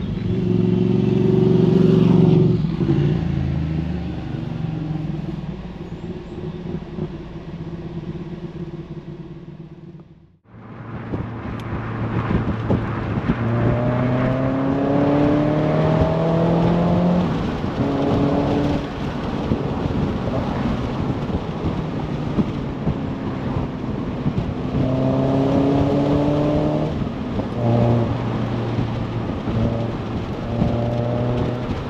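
Mazda MX-5 NC's four-cylinder engine (BBR Super 185 tune) on the road, with wind and road noise. The revs rise hard at the start and then settle to a steady cruise. The sound cuts out for a moment about ten seconds in, and after that the engine pulls up through the revs several times, each climb ended by a drop in pitch at a gear change.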